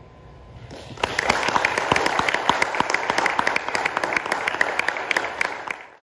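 An audience applauding, starting about a second in and cut off abruptly near the end.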